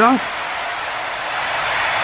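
A steady, even rushing noise with no rhythm or pitch, after a man's voice finishes a word at the very start.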